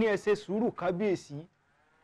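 A man speaking in a wavering voice for about a second and a half, then a pause.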